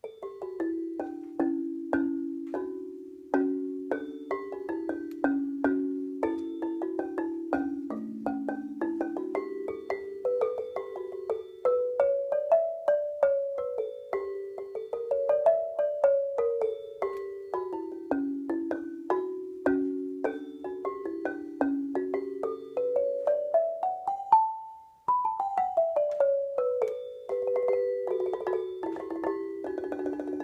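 Lithophone, a mallet keyboard with stone bars, played with two mallets in an improvisation: a steady stream of short struck notes that ring briefly, mostly in the low-middle range. About three-quarters of the way through, a quick run climbs to the highest note and then steps back down.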